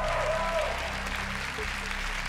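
Studio audience applauding over a low, sustained music bed.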